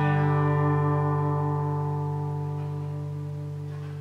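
LÂG Tramontane T66DCE acoustic guitar: a single strummed chord left ringing, its notes held steady and slowly dying away. This shows the guitar's long sustain.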